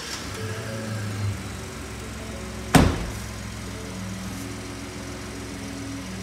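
Ford F-150's 2.7L EcoBoost twin-turbo V6 just after starting, running a little higher for about the first second before settling into a steady idle. About three seconds in, the truck's door shuts with a loud slam.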